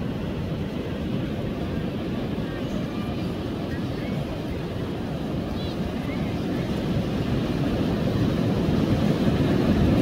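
Ocean surf breaking on a sandy beach: a steady low rumble of waves and wash, growing louder over the last few seconds.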